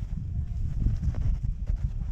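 Plastic sledge sliding down a packed snow run: a steady low rumble of the hull over the snow, with a few small knocks from bumps in the track.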